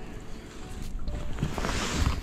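Wind rumbling on the camera microphone in an open boat, with a swell of hiss near the end, under faint background music.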